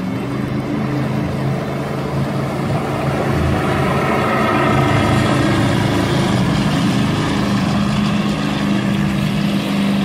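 Powerboat engine running at high speed as the boat passes, with the rushing of the hull and spray on the water. It grows louder toward the middle and then holds steady.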